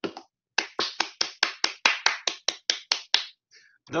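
One person clapping: about a dozen quick, evenly spaced sharp claps, about five a second, that stop after roughly three seconds.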